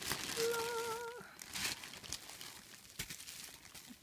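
Clear plastic wrapping and bubble wrap crinkling with a few sharp crackles as plastic gashapon capsules are handled. A person hums one short, wavering note about half a second in.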